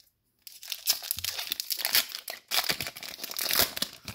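Foil wrapper of a Magic: The Gathering collector booster pack crinkling and tearing as it is ripped open by hand, a dense crackle starting about half a second in.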